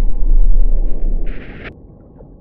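A loud, deep rumble: the film's sound design for the submersible's idling hum underwater. It drops away about a second and a half in, with a short burst of radio static just before it fades.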